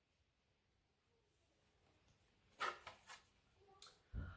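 Near silence: room tone, with a few faint, short sounds about two and a half to three seconds in.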